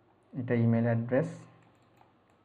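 A man's voice saying one short word in Bengali, about a second long; otherwise only faint room tone.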